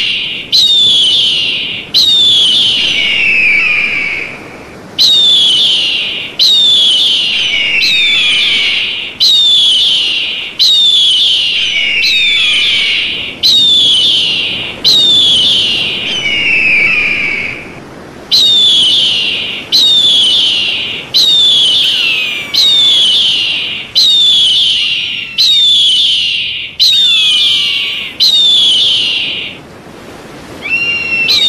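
An eagle's shrill screaming call, each scream sliding down in pitch, repeated about once a second with a couple of short pauses.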